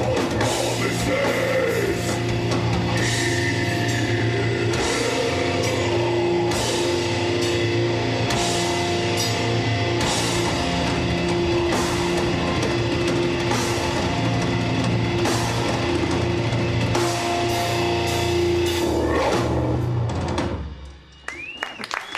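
Live death/doom metal band playing: distorted electric guitars, bass and a drum kit with repeated cymbal crashes. The song ends about twenty seconds in, the sound dying away, and a short rising whine follows.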